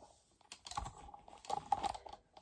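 Handling noise from a phone camera being moved about on a bed: a run of small clicks and rubbing against the bedding.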